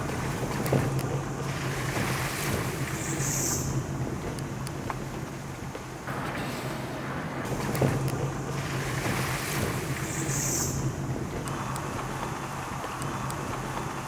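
Inside a moving car's cabin: a steady low engine hum under a rushing road and wind noise that swells twice.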